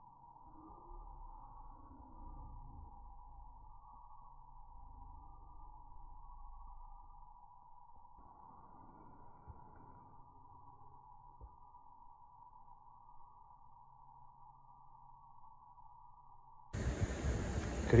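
A faint, steady, muffled hum held at one mid pitch. About three seconds before the end it cuts off suddenly into louder outdoor background, and a voice begins.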